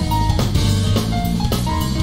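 Live jazz-fusion trio playing: busy drum kit over a walking electric bass line, with a few held higher notes above.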